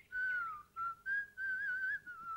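A man whistling a tune in several short phrases. The first phrase glides down and the last one wavers up and down.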